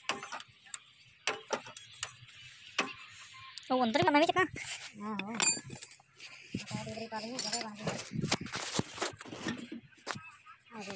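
People's voices talking and calling, with scattered sharp clicks and clinks of hand tools on metal.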